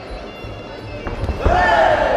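A few dull thuds from the fighters' blows and footwork in the ring, then a loud, held shout beginning about one and a half seconds in.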